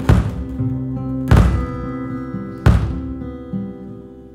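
A live band with guitar and keyboards plays three heavy accented hits about 1.3 seconds apart, each with a sharp attack over held chords that ring on. The sound then starts to die away, as at a song's close.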